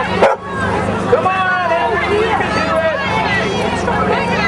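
A dog barking, with a run of pitched calls between about one and three seconds in, over crowd chatter.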